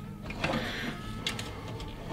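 A hard-plastic Beast Wars Megatron action figure being lifted and turned in a gloved hand: faint plastic rubbing, with a few light clicks.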